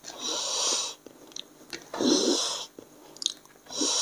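Heavy, hissing breaths through the mouth, three of them about two seconds apart, as a person eating spicy food blows against the heat. Short wet chewing clicks come in between.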